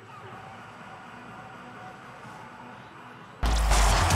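Faint, steady stadium and field ambience from the match broadcast. About three and a half seconds in, a sudden loud transition sting with deep bass cuts in, the sound effect of the logo graphic.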